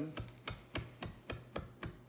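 Chef's knife chopping fresh rosemary leaves on a cutting board: quick, regular knocks of the blade, about four a second.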